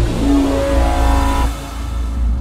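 Cinematic trailer score. A sudden hit with a noisy whoosh opens onto a heavy bass drone and a held synth chord, which fades about one and a half seconds in.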